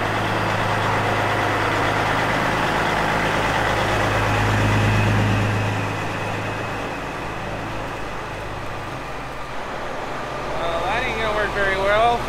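Diesel semi truck pulling a grain trailer slowly into the shop, its engine running at a low steady drone. The drone is loudest about four to five seconds in as the truck passes close by, then fades.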